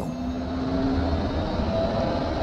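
Steady low rumble of a vehicle driving along a road.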